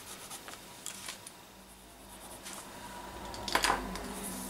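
White charcoal pencil scratching softly on toned paper in a few faint short strokes, followed about three and a half seconds in by a louder brief rustle of the sketchbook being handled.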